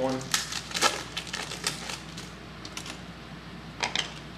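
Trading-card pack wrapper being torn open and crinkled by hand, in quick crackly bursts over the first two seconds, then quieter rustling with a couple of sharp crinkles near the end.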